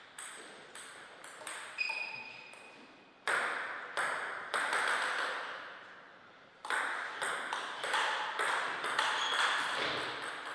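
Table tennis ball clicking off table and rackets, each hit with a short ring. Scattered bounces come while play is paused, then a rally of quick hits starts about two-thirds of the way in. A short squeak sounds about two seconds in.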